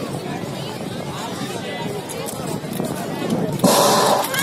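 Crowd chatter and calls, then a sudden loud burst near the end: the start signal for a roller skating race.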